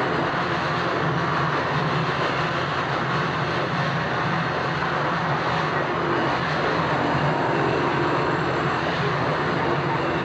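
A steady, even roaring noise with a low hum underneath, unchanging throughout: the soundtrack of a night street scene from a 1979 film.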